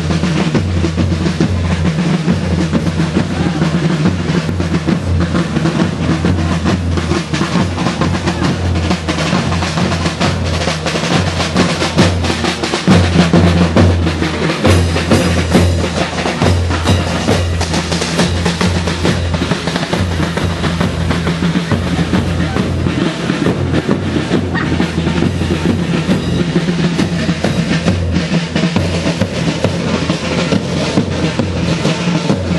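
Street drum band playing a fast, continuous drum roll with a bass drum underneath, without a break.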